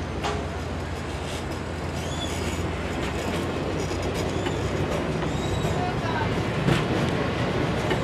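Amtrak Cascades Talgo passenger train rolling past: wheels clicking over the rail joints, with a few short high-pitched squeals, over a steady low hum that grows gradually louder as the locomotive at the rear end approaches.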